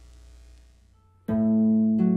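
Pedal harp: a faint low hum, then about a second in a chord of low plucked notes is struck and left ringing, the opening of a solo harp performance.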